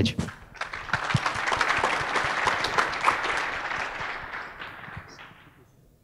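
Audience applauding, starting about half a second in, swelling, then dying away near the end.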